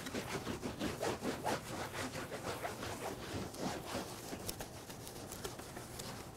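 A cloth rag wiped back and forth across a work table top: a quick, irregular series of rubbing strokes, several a second, that clean dust off the surface.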